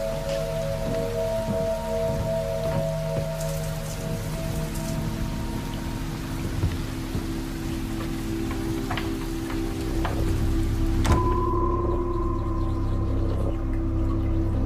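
Ambient film score of long held tones, over a steady rain-like hiss that cuts off with a sharp click about eleven seconds in; after that only the held tones go on.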